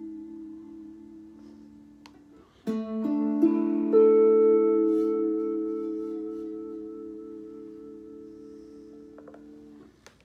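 Slide guitar in open D tuning: a ringing chord fades away, then about three seconds in several notes are picked in quick succession, part slid with the bar and part fretted with a finger behind it, and left to ring together, fading slowly until they are damped just before the end.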